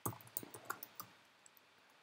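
Faint computer keyboard typing: about half a dozen separate key clicks in the first second.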